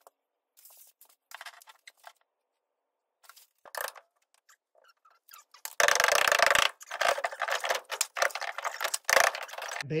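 Suspended ceiling tile being pushed up and slid out of its metal grid, a loud scraping rattle with bits of debris falling, starting about six seconds in and going on in several pulses; a few faint knocks before it.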